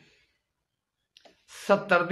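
A pause in a man's speech: near silence with one faint click, then a short breath and his voice picking up again near the end.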